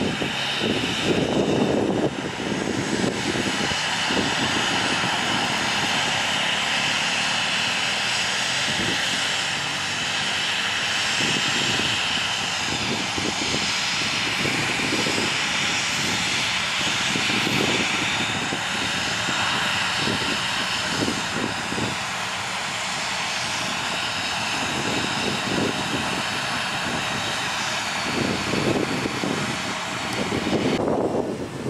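Jet engines of the Indonesian presidential Boeing 737 running as it rolls along the runway past the camera: a steady rushing noise with a high whine.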